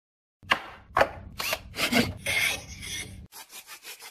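A hand tool scraping back and forth through wood. It opens with two sharp strokes and a few longer ones, then a little past three seconds in it changes to quick, even strokes at about five a second.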